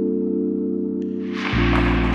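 Background music with long held chords; about a second and a half in, a bowling ball crashes into the pins and the pins clatter, a strike.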